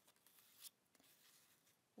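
Near silence: room tone in a small room, with one faint, soft rustle a little over half a second in.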